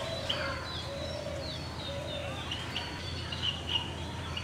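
Several birds calling: many short high chirps and whistled slides, some falling in pitch, over lower repeated notes, with a steady low background rumble.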